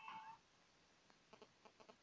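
TV music stops abruptly about half a second in. Near silence follows, with faint quick clicks at about five a second while the satellite receiver's channel list is stepped through.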